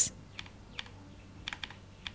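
A few quiet, irregular keyboard typing clicks.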